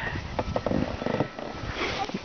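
Snow crunching and scraping as a child on a plastic sled pushes off with their feet and the sled starts to slide, with irregular scuffs.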